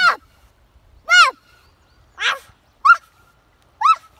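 A dog barking five times, about once a second, each bark short and arching up then down in pitch.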